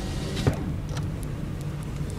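A car's engine and tyre noise heard from inside the cabin while driving on a snowy road: a steady low hum, with one brief knock about half a second in.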